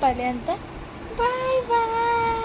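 Playful sing-song vocalising to a baby: short sliding voice sounds, then one long held note starting a little over a second in.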